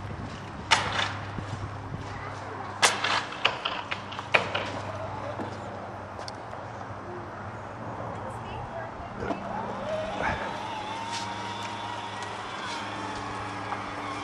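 Lamborghini Countach 5000 QV downdraft V12 idling steadily with a low, even hum. A few sharp knocks or clicks sound in the first few seconds.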